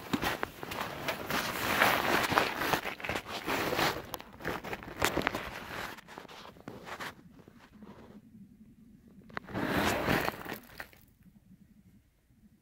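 Crunching snow and rustling twigs and roots brushing against a handheld camera as it is pushed into a bear den entrance. The irregular crackling runs busily for about seven seconds, eases off, and comes back in one more burst shortly before the end.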